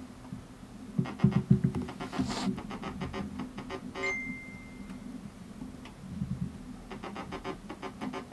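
Experimental electronic sounds from a small keyboard synthesizer: clusters of short pitched blips and clicks over a steady low hum, with one high tone held for about a second halfway through.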